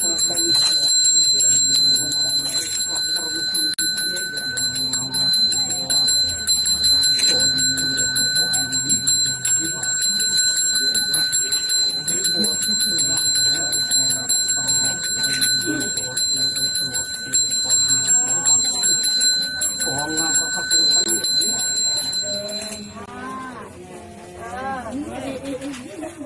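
A Balinese priest's handbell (genta) rung continuously, a steady high ringing that stops shortly before the end, over a low voice chanting prayers.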